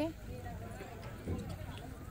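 A low steady hum with faint background voices and a soft knock a little past halfway.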